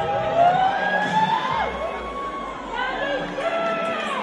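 Audience shouting and cheering, with several long drawn-out yells sliding in pitch over a steady crowd noise.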